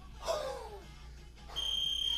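A steady high-pitched electronic beep starts about one and a half seconds in and holds for well over a second, the kind of signal an interval timer gives. Just before, about a quarter second in, a short sound falls in pitch as the 32 kg kettlebell is lowered from overhead.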